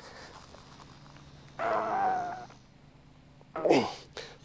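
Three-eighths-inch rebar being bent over with a plumber's copper-tubing bender: faint handling noise, then, about a second and a half in, one loud held pitched sound lasting under a second. A short spoken word follows near the end.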